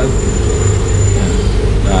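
Steady low rumble with a thin high-pitched whine over it, running without change; speech comes back at the very end.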